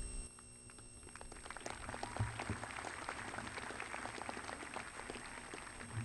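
Faint audience applause, a dense patter of many hands clapping that builds up about a second in and carries on.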